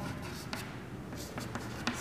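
Chalk scratching on a chalkboard as words are written: a few short, faint strokes.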